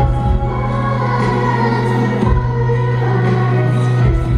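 Live arena concert music: a backing choir singing with the band over a long held low bass note, recorded from the audience seats.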